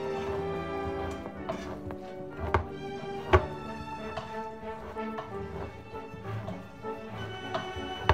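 Background music with held notes, over which a handheld manual can opener clicks irregularly as it is cranked around a metal can; the loudest click comes a little past three seconds in.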